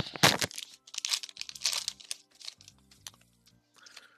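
Foil booster-pack wrapper crinkling as it is handled and torn open, in several short bursts over the first two seconds, the loudest at the start. Faint music plays underneath.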